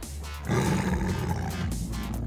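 Tiger roaring: a rough, drawn-out roar that starts about half a second in, over background music.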